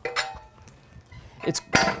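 A single sharp metallic clink with a short ringing tail as the spoked dirt-bike wheel is handled and turned on its metal tire stand.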